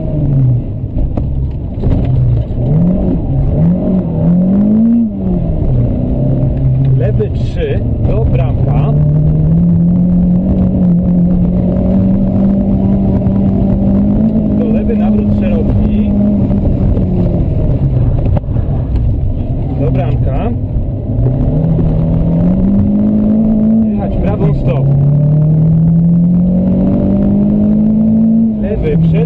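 Renault Clio rally car's engine heard from inside the cabin, driven hard through the gears: the pitch climbs and drops back sharply at each shift. There are a few quick rises and falls in the first five seconds, then longer pulls up through the revs.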